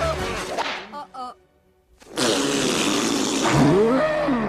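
Cartoon sound effects: a yell trails off into about a second of near silence. Then comes a sudden, loud rushing din as a rhinoceros charges, with a rising cry near the end.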